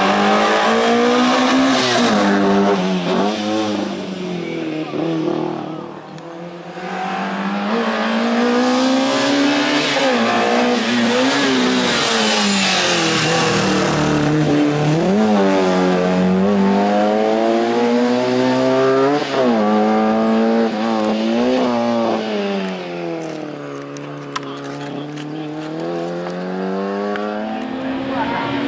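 Hatchback race car's engine revving up and dropping back over and over as it is driven through a cone slalom, the pitch rising and falling every second or two. There is a brief dip about six seconds in, and the engine is quieter near the end.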